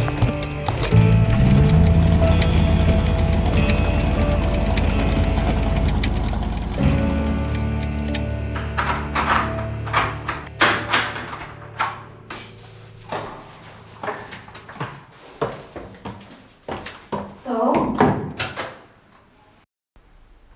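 Film score with sustained low tones and a strong bass, which thins out after about seven seconds into a sparse run of sharp knocks and clicks, with a brief voice-like sound near the end.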